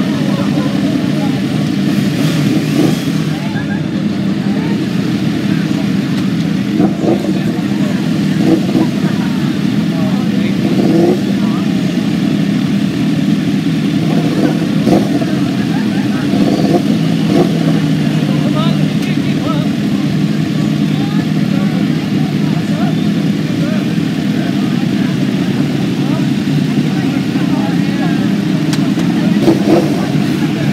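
Several sport motorcycles idling together in a loud, steady hum, with a few short louder spikes, alongside passing street traffic.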